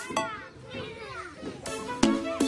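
Several cartoon children's voices giggling and chattering playfully over light music, with the music filling back in near the end.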